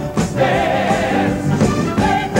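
Gospel-style choir singing a Broadway show tune, with sung voices over a sustained musical backing.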